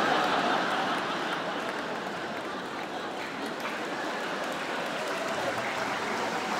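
Large theatre audience laughing and applauding, loudest at the start and easing off slightly.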